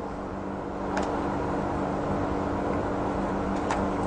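Steady electrical hum and hiss of an old lecture recording, with two faint clicks, about a second in and near the end, as a book on the desk is handled.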